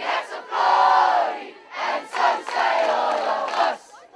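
A crowd of many voices shouting together in unison, in several long shouts of about a second each, like a group war cry or chant.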